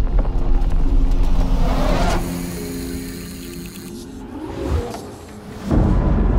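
Cinematic trailer music with held notes over a low pulse, and a car rushing past about two seconds in. The music then drops back and swells into a sudden loud hit near the end.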